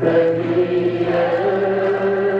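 Choir singing a Bosnian ilahija (Muslim devotional song) in long held notes, stepping to new pitches twice.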